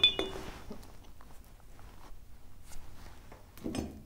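A brief ringing clink as a paintbrush knocks against a container, then faint rubbing and handling noises as the brush is wiped off, with a short rustle near the end.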